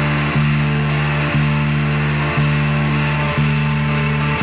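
Live rock band playing an instrumental passage: electric guitars and bass holding chords that are re-struck about once a second, over drums, with a cymbal crash shortly before the end.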